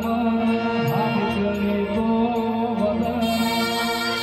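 Brass band music: a saxophone plays a melody over steady held accompaniment tones. About three seconds in, a brighter layer with a regular beat joins, as the rest of the band comes in.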